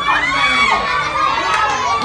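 A crowd of young children shouting and cheering over one another, many high voices at once.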